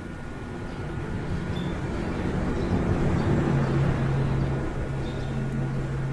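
A low rumbling noise with a steady low hum, swelling to its loudest about three to four seconds in and then slowly fading.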